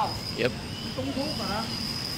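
A steady high-pitched whine holds one pitch under a man's short "yep" and other brief voices.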